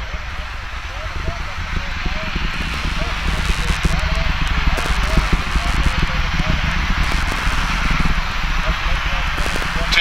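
Distant rumble and crackle of a Falcon 9's nine Merlin engines heard from the ground during first-stage burn, growing gradually louder.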